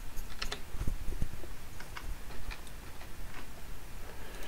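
Light, irregular clicking of computer keys, about a dozen short clicks spread over the few seconds, over a faint hiss.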